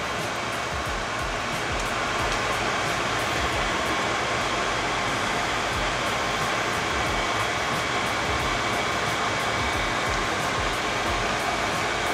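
A steady rushing noise at the stove as a pot of soup boils, with faint background music.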